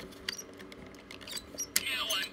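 Light plastic clicks from hands working a Transformers Dragonstorm toy figure. Near the end the figure's electronic sound effect starts, with falling sweeps.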